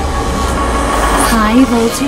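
Electronic radio-show intro jingle: a deep, steady rumbling bass under synthetic sound effects, with a processed voice starting to announce the show's name near the end.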